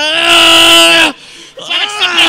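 A person's long, drawn-out vocal cry held at one steady pitch for about a second, followed shortly by a second held cry near the end.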